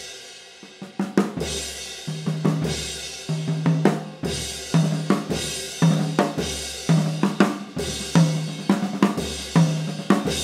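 Birch drum kit played in a steady groove: kick drum about once a second, with ringing tom notes and snare hits in between. Meinl Byzance cymbals wash over the drums throughout.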